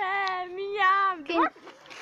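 A girl's long, drawn-out excited cry held at one steady pitch for about a second and a half, ending in a short upward slide of the voice.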